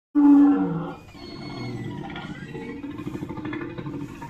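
A recorded dinosaur roar: it starts suddenly and loud, falls in pitch over about the first second, then carries on much more quietly as a rough, low sound.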